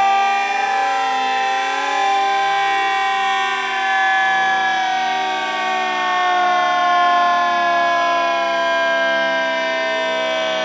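Pub background sound slowed down by slow-motion playback, stretched into a loud, eerie chord of long held tones that slowly fall in pitch.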